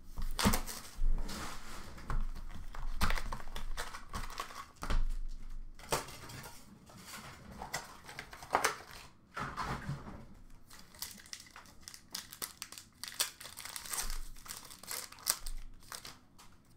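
Plastic wrapping and packaging of a sealed hockey card box crinkling and tearing in irregular bursts as the box and its packs are opened by hand.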